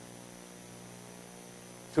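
Steady electrical mains hum: a low, even buzz with a stack of evenly spaced overtones.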